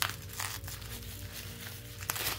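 Plastic bubble wrap crinkling as scissors cut through it, with a few short sharp sounds near the start and about half a second in. Steady background music plays underneath.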